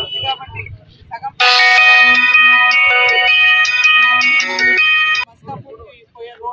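A mobile phone ringtone, a loud electronic melody of held notes, starts suddenly about a second and a half in and cuts off abruptly after about four seconds.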